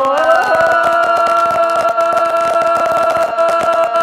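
One voice holding a long, steady sung note after a short rise in pitch, in a Tày–Nùng heo phửn folk song.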